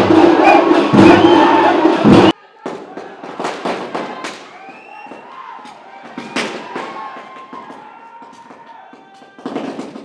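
Loud crowd noise over music that cuts off suddenly about two seconds in, followed by firecrackers going off on the ground: scattered sharp bangs and crackling, with voices in the background.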